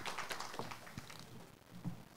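Audience applause dying away to a few scattered claps.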